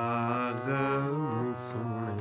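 Nagi harmonium playing a steady low drone and melody notes under a male voice holding and ornamenting a sung syllable of a Gurbani kirtan line. The pitch wavers up and down, and a short breathy hiss comes near the end.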